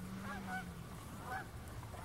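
Bird calls: short honk-like calls that rise and fall, coming in small clusters. A low steady hum runs under them for about the first second.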